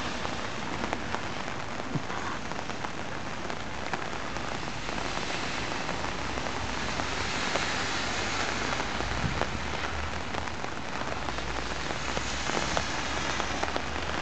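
Steady rain falling, a continuous hiss with many individual drops ticking close by.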